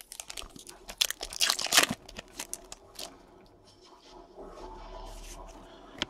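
A trading-card pack's wrapper being torn open and crinkled: a dense run of crackles, loudest about one to two seconds in, dying down by about three seconds.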